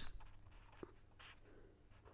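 Pen writing on paper, faint scratching strokes as a word is written, with one brief louder stroke about a second and a quarter in.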